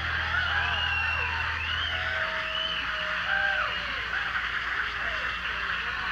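Crowd noise between songs on a concert soundboard recording: scattered whistles and shouts from the audience over a hiss. A low amplifier hum stops about two seconds in.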